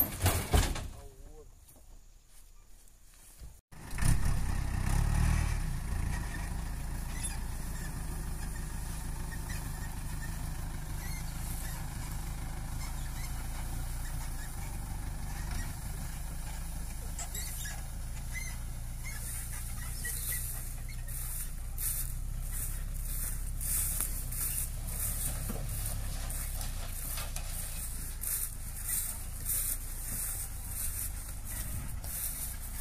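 A brief clatter at the start, then, about four seconds in, a truck engine begins running steadily with a low rumble that carries on to the end.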